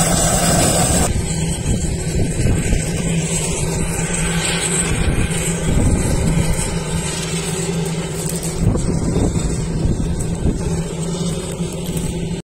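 Air Tractor AT-802 air tanker's turboprop engine running steadily on the ground, a constant loud droning hum.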